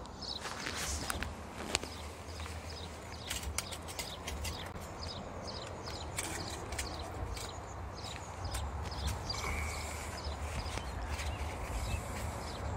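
A small folding steel stove (Bushbox LF) full of charcoal being handled and moved with a gloved hand: scattered metal clicks and knocks, with steps and scrapes on gravel. Under it runs a steady low rumble of motorway traffic.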